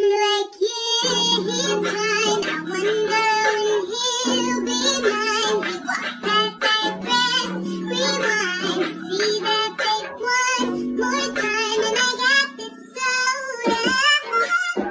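A song with a high-pitched lead vocal singing over steady held chords.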